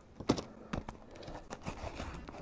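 A shrink-wrapped cardboard trading-card box being handled: a few light knocks and taps, with faint crinkling of the plastic wrap.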